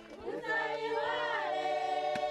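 A choir singing, several voices holding notes together over a steady low note, growing louder about half a second in.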